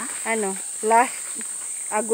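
Insects in the forest giving a steady, high-pitched drone, with two short voiced sounds from a person about a third of a second and a second in.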